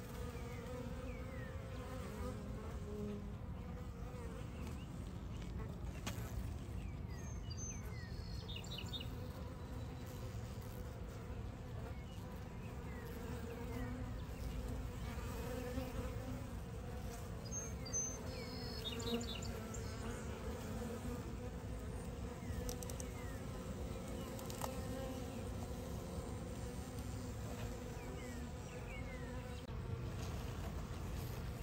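A honey bee swarm humming steadily at close range: the low, even buzz of many bees as the swarm walks into a new hive box.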